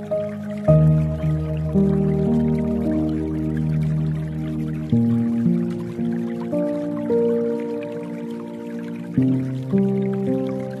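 Slow, soft piano music, with a new chord struck about every four seconds and held, over a layer of dripping water.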